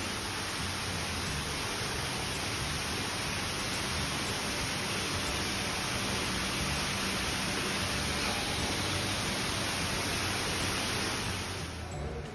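Water falling steadily from a small artificial rock waterfall into a shallow pool: an even, unbroken splashing hiss that stops suddenly near the end.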